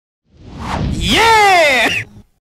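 Record label's logo sting: a whoosh swells up, then turns into a loud electronic tone that sweeps up in pitch and glides slowly down before cutting off suddenly.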